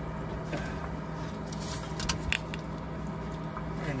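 Large channel-lock pliers being fitted around a spin-on fuel filter canister, with a few light metal clicks and taps about halfway through. A steady low hum runs underneath.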